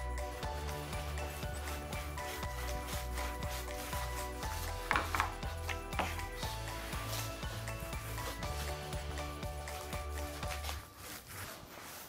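Background music with a steady bass line, which stops near the end, over the rubbing of a paint roller spreading wet clear top coat across an epoxy table top.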